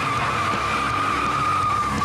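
Car tyres squealing in one long, steady screech, a skid sound effect in a film's sound mix.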